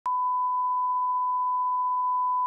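A steady 1 kHz sine-wave reference tone, the line-up test tone that goes with colour bars, switching on abruptly at the start and holding one unchanging pitch.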